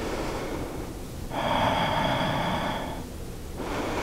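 Slow, deep breathing of a person holding a yoga pose: a faint breath, then a longer, louder breath starting about a second in and lasting a couple of seconds.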